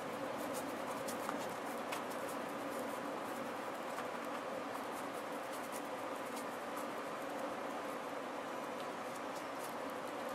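Faint, soft scratching of a small paintbrush working watered-down paint over a textured faux pie crust, with scattered light ticks over a steady hiss of room noise.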